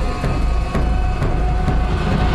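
Dramatic background score from a TV serial soundtrack, with heavy drum beats about twice a second over a deep, sustained low rumble.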